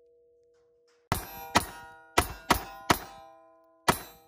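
Six 9mm pistol shots fired through a car windshield in an uneven string, the sixth coming about a second after the fifth. A steel target's steady ringing tones hang on between the shots.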